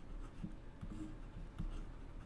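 Digital pen stylus writing on a tablet surface: faint, irregular light taps and strokes as a word is handwritten.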